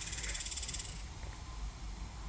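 Insect chirring outdoors, a steady high buzz with a fast, even pulse, that stops suddenly about a second in, leaving a low rumble underneath.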